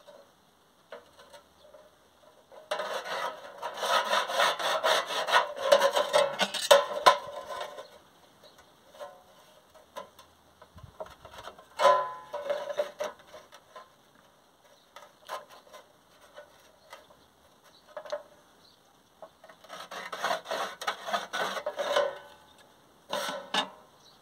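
A pencil scratched along a metal square across a rusty steel sheet, marking out cutting lines in bursts of rasping strokes a few seconds long, with a few sharp knocks as the square is moved on the metal.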